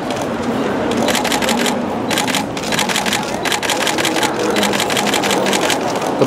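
Still-camera shutters firing in rapid bursts, several clicks a second, starting about a second in and running until near the end, over a background of voices and shop noise.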